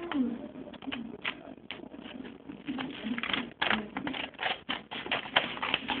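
Scissors snipping through paper, a quick run of short clicks and crinkles that gets busier about halfway in, over a low wavering hum.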